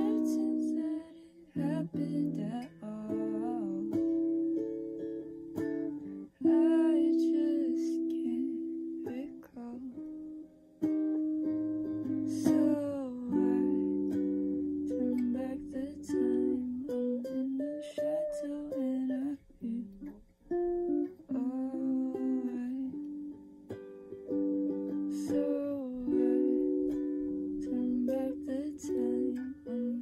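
Electric guitar played solo, a picked melody of single notes and chords that ring and fade, with a slide up in pitch about twelve seconds in.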